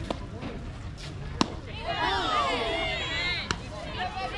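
A softball pitch landing in the catcher's mitt with one sharp pop, followed at once by many voices shouting and cheering for about a second and a half, then a lighter click near the end.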